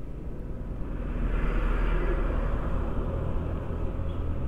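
Honda Dio scooter on the move: steady low rumble of its engine and wind on the microphone, with a hiss of road noise that swells about a second in and fades again near the end.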